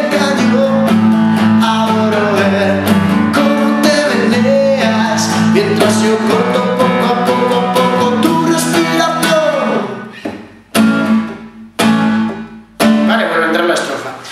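A man singing a song's chorus while strumming a nylon-string classical guitar. Near the end the voice falls away in a downward slide, and three separate chords are struck about a second apart, each cut short.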